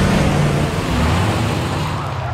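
Car engine running as the car drives in and pulls up, with a rushing noise over it; the engine's pitch drops about halfway through as it slows.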